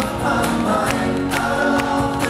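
Live acoustic band music: a male lead voice singing over a strummed acoustic guitar, with a steady beat of about two hits a second.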